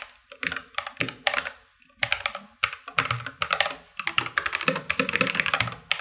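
Typing on a computer keyboard: quick runs of key clicks, with a short pause about one and a half seconds in.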